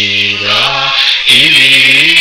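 Low-pitched voices singing a chant-like melody with long held notes, pausing briefly about a second in before the next phrase starts.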